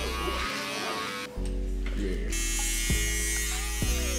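Electric hair clippers buzzing steadily as they cut hair, with background music over them. The low buzz drops out briefly about half a second in and comes back about a second and a half in.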